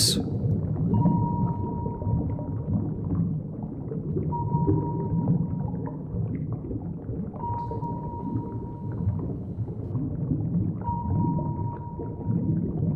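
Cartoon underwater sound effect: a continuous low rumble, with a steady high tone held for about a second and a half four times, roughly every three seconds.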